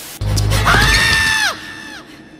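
Cartoon soundtrack: a deep hit about a quarter second in, then a high held voice that rises, holds for most of a second and drops away.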